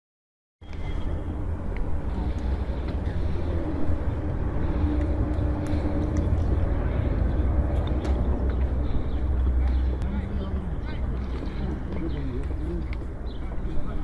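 Indistinct voices of people talking near a handheld phone microphone outdoors, over a steady low rumble.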